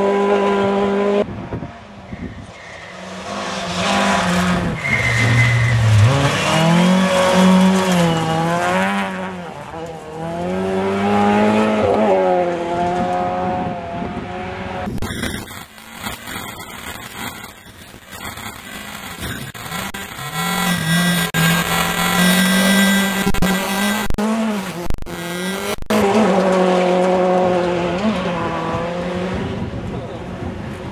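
Two-wheel-drive rally car engines running hard past on a forest stage, pitch rising and falling with revving and gear changes over several passes. About halfway through, several seconds of dropouts and digital noise come from the faulty camcorder recording.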